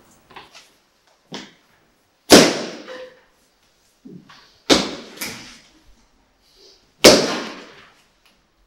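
Four loud, sharp slaps or bangs, each ringing out briefly in a hard-walled room: one about two seconds in, two close together in the middle, and one near the end, with a few fainter knocks between.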